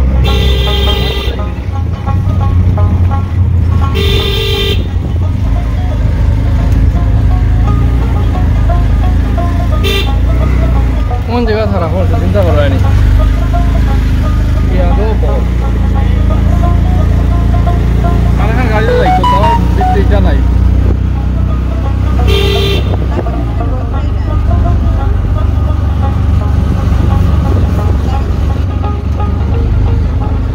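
Riding in a three-wheeled auto-rickshaw: a steady engine and road rumble, with short horn toots three times, right at the start, about four seconds in and again after about twenty-two seconds.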